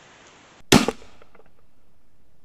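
A single loud, sharp gunshot crack about two-thirds of a second in, dying away within a third of a second.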